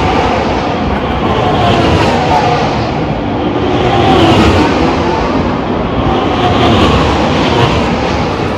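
Formula One cars' turbocharged V6 hybrid engines running at speed past a street circuit, the sound swelling and fading several times as cars go by one after another, each engine note sliding in pitch as it passes.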